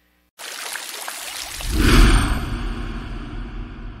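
A rushing noise starts suddenly, swells to a loud low rumble about two seconds in, then slowly fades.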